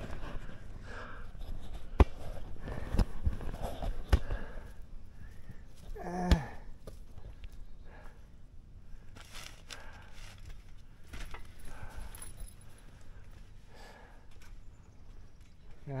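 Scattered thumps and sharp knocks of people moving on a trampoline, with faint, unclear voices and a short vocal sound about six seconds in.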